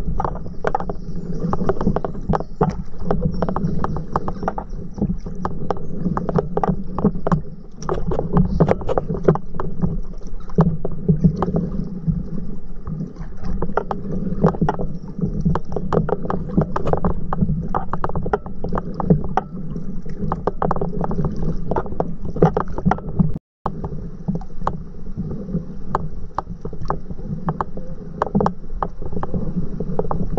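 Water lapping and splashing against a stand-up paddleboard as it is paddled along a river, a busy run of small irregular slaps and splashes over a steady low rumble. The sound cuts out for a moment about three quarters of the way through.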